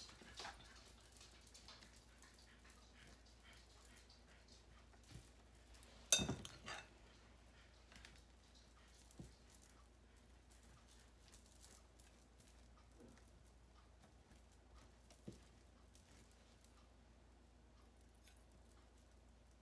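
Faint scraping and ticking of a table knife spreading a thick cheese dip over a flour tortilla on a counter, close to near silence, with one sharp click about six seconds in.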